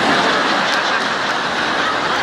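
Seminar audience reacting together: a steady wash of crowd noise filling the hall.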